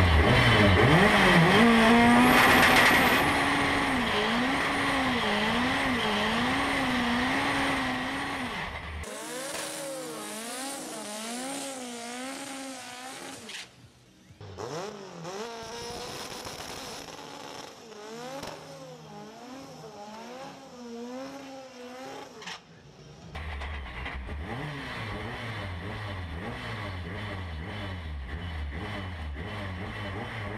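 Turbocharged drag-racing Chevette engine at full throttle during a quarter-mile pass. It is loudest for about the first nine seconds, then quieter across several abrupt cuts, with the engine note wavering up and down.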